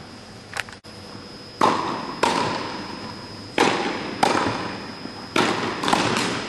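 Tennis rally in an indoor hall: sharp pops of the ball off racket strings and court, coming in pairs about two seconds apart, each echoing briefly in the hall.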